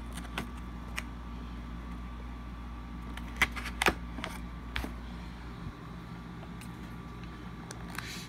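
Small cardboard box being handled and pried open by hand: a few short, sharp clicks and cardboard snaps, the loudest two about three and a half and four seconds in, over a steady low hum.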